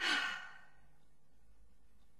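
A person's single breathy sigh right at the start, fading out within about half a second, followed by a low steady background.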